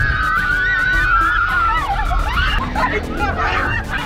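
Passengers screaming and laughing inside a fast-moving car: one long high scream at the start, then shorter shrieks and laughter. Background music with a steady beat plays underneath.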